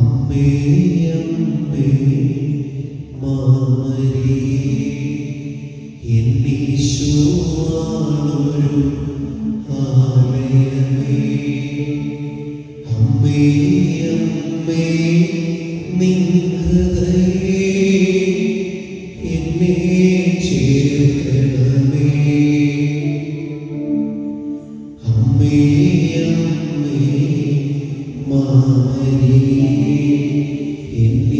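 Devotional chant sung in long held phrases, each a few seconds long, with short breaks between them.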